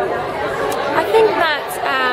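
Voices chattering in a large room, with no distinct words.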